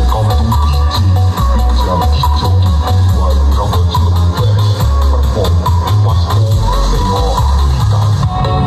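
Loud electronic dance music played through a large outdoor sound system: stacked 2×18-inch subwoofer cabinets with a mid-high speaker column, the bass heavy and pulsing under the melody.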